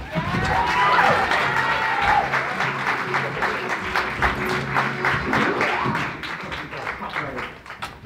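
Theatre audience applauding, dense clapping throughout, with a few whoops in the first couple of seconds and music playing underneath.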